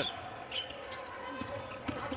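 Basketball being dribbled on a hardwood court, a few short thuds over faint arena crowd noise.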